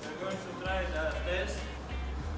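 Quiet, indistinct talking over a steady low hum.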